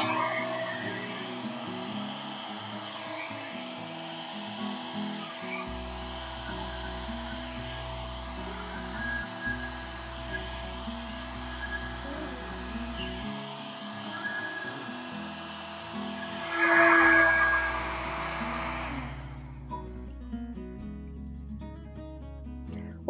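Handheld hairdryer blowing onto wet acrylic paint, a steady rush of air with a motor whine held at one pitch. It swells louder about 17 seconds in and cuts off about three seconds before the end, leaving background music.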